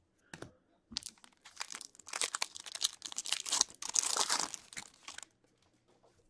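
Foil wrapper of a hockey card pack being torn open and crinkled, a crackling run of about four seconds that stops suddenly.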